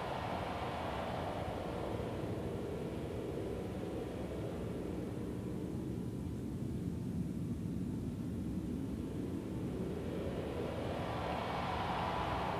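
A sustained jet-like whooshing noise with no beat or notes, whose brightness sweeps slowly down until about halfway through and then back up: a swept noise effect opening a 1970s hard-rock recording.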